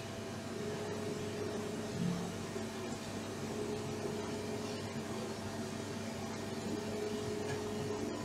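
CNC mill-turn machining centre running as it mills a swivel-mount joint under coolant spray, heard through the machine's closed enclosure: a steady machine hum with a faint whine that comes and goes.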